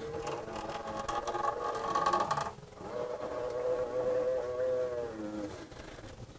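Y-axis bed of a Wanhao Duplicator 9 3D printer pushed back and forth by hand, with the motor unpowered: the toothed belt, the pulleys and the stepper motor turn, and each stroke gives a whirring tone. There are two strokes, the second lower in pitch. The bed is being run by hand to check that the newly tensioned belt tracks in the centre of the idler pulley.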